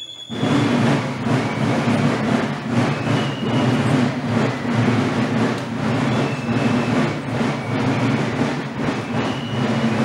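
Marching drums of a folkloric march company start suddenly, less than a second in, and keep playing a loud, continuous rattling roll.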